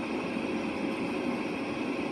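Steady hiss and low hum of a car's running ventilation, heard inside the cabin.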